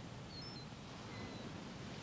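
Faint, even wash of surf breaking on shore rocks, with a few brief high-pitched chirps in the first second and a half.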